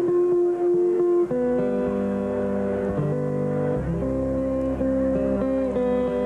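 Solo acoustic guitar played finger-style: full chords with low bass notes left to ring, the harmony changing every second or two, about four times.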